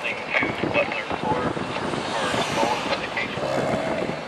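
Indistinct voices of people talking, with a rushing noise that swells and fades between about two and three seconds in.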